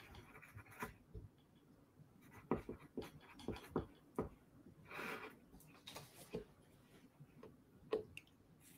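Faint handling noises: scattered light clicks and taps, with a brief soft rustle about five seconds in.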